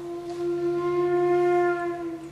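Flute holding one long low note that swells a little and fades, over a steady low hum.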